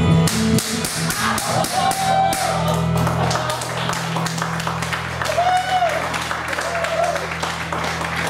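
Audience clapping and a few short shouts over the final held chord of the song's backing track; the chord stops near the end.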